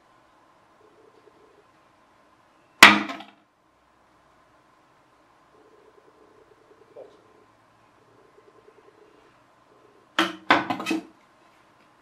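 A polystyrene pizza-tray glider landing hard near the microphone with one sharp knock about three seconds in, then a second glider crashing with a quick rattle of several knocks near the end.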